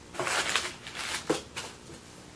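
Packaging being handled, crinkling and rustling in several short bursts, the longest near the start.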